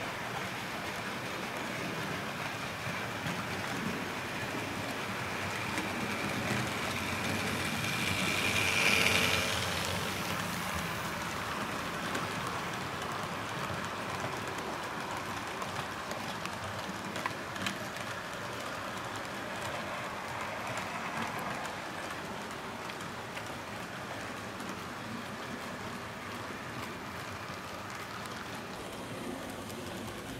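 Model railway freight train running past on the layout track: a steady rolling clatter of the wagons' wheels, which swells to its loudest about nine seconds in and then eases off.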